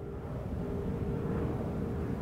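Road traffic: a steady low rumble of passing cars, slowly growing, with a faint steady hum.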